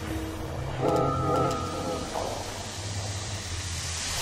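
Quiet breakdown in a minimal techno DJ mix: a low bass drone with a pitched, wavering sound that swells in about a second in and fades out around the two-second mark.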